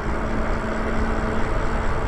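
Wind and road noise from riding a fat-tire e-bike down a paved street at about 17 mph: a steady rush, with a faint steady hum that stops partway through.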